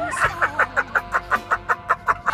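A man laughing hard and loudly, a rapid run of "ha-ha-ha" bursts at about five a second, with music underneath.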